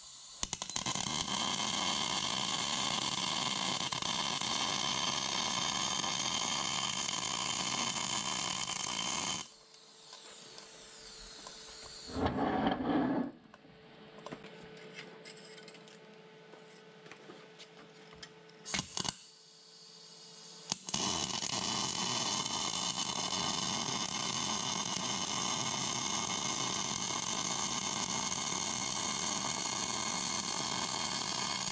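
MIG welder arc crackling steadily as a weld run is laid onto a steel tapered roller-bearing cup. It stops after about nine seconds and starts again about twenty-one seconds in. Between the runs there is a short, louder noise and a few clicks.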